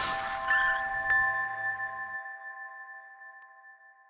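Intro logo sting: a whoosh, then two metallic chime hits whose ringing tones slowly fade away.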